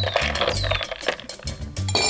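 Background music, with a metal bar spoon clinking against ice and glass as a chilcano cocktail is stirred in a highball glass.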